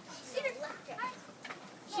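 Faint voices of a small group, children among them, with a couple of short rising voice sounds and a single light click about one and a half seconds in.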